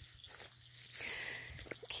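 A quiet pause between sung lines, with faint outdoor background. About halfway in comes a soft breath intake before the singing resumes.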